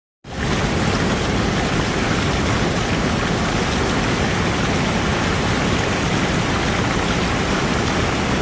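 Heavy rain falling steadily, an even, unbroken hiss of a tropical downpour on ground and standing water.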